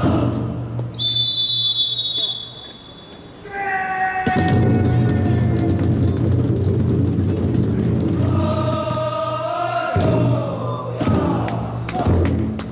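A festival drum float's taiko drum keeps up a low, steady beat while the bearers give long, held shouted calls, one about three and a half seconds in and another near nine seconds. A shrill whistle blows briefly about a second in.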